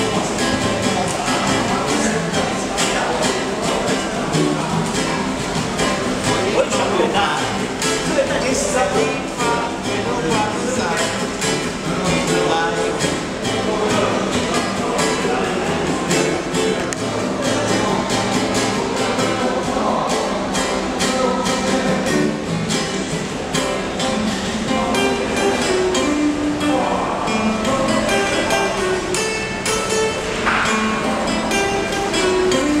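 Nylon-string classical guitar played in a continuous run of plucked notes and chords.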